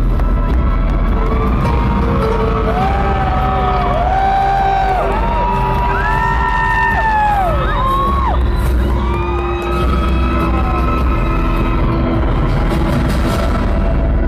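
Rock band playing live and loud in an arena: an electric guitar lead of sustained, bent notes over drums and bass.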